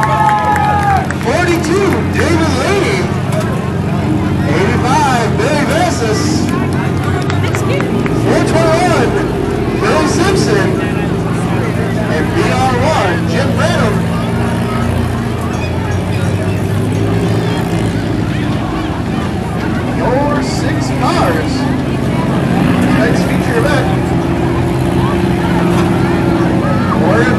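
Several front-wheel-drive figure-eight race cars running at low speed on a dirt track, a steady low engine drone, with crowd chatter over it.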